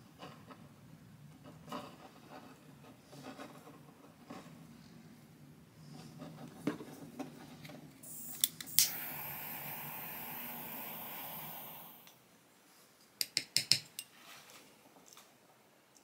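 A lighter clicked a few times and lit, its flame hissing steadily for about three and a half seconds as it shrinks heat-shrink tubing over a wire connection, then cut off. Light ticks of wires and small parts being handled come before it, and a quick run of sharp clicks follows.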